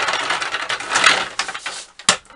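A small home-made wooden trolley on casters being rolled back and forth across a gritty concrete floor: a continuous rough rolling noise from the casters that fades just before the end.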